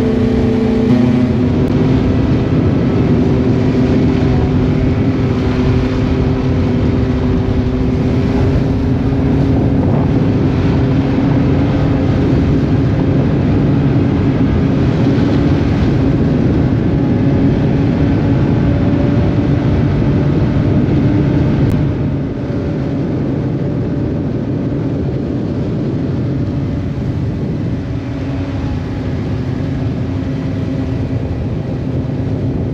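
Ski-Doo snowmobile running at a steady cruising speed along a snow trail, its engine note drifting slightly in pitch. About two-thirds of the way through it eases off a little and gets slightly quieter.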